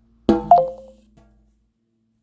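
An Android phone's short electronic chime as it reads an NFC tag: a sharp start, then a higher note falling to a lower one, fading out within about a second.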